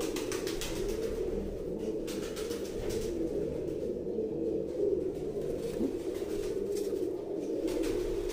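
Domestic pigeons cooing continuously, a low steady murmur of overlapping coos, with a few short scratchy noises in between.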